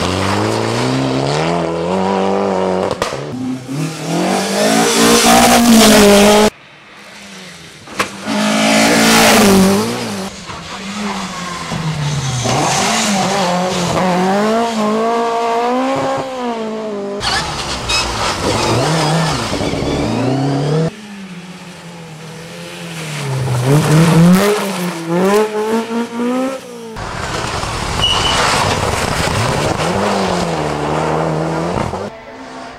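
Rally cars driven hard, one after another: each engine revs high with its pitch climbing through a gear and dropping at the shift, again and again. The sound changes abruptly several times as one car gives way to the next.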